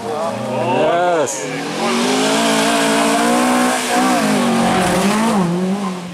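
Volvo Amazon 122 S rally car's four-cylinder engine revving hard as the car pulls away again after stopping on the stage and drives close past, with tyre noise. The engine note climbs, drops briefly at a gear change about four seconds in, then runs on lower.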